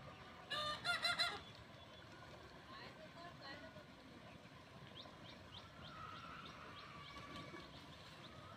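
A waterfowl calling: a quick run of four or five loud calls about half a second in. Later, faint short high chirps of small birds over a low outdoor background.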